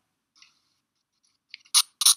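Pencil scribbling sound effect playing back from the preview's audio track: faint scratching, then a short louder scratch near the end.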